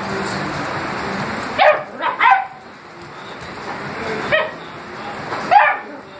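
A beagle barking four times: two barks close together about a second and a half in, one more past the middle and a last one near the end, each short and falling in pitch.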